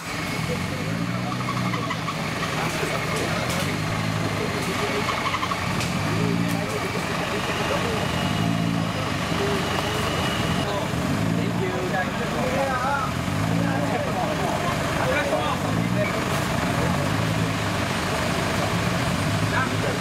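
An off-road competition 4x4's engine runs steadily, its low note swelling in a repeating pattern about every two seconds, with spectators' voices over it.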